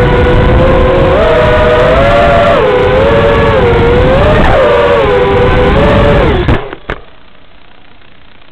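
Electric motors of an FPV quadcopter whining through the RunCam Swift 2's onboard microphone, pitch rising and falling with throttle. About six and a half seconds in the sound cuts off with a couple of knocks as the quad crashes into the grass, leaving only a steady hiss.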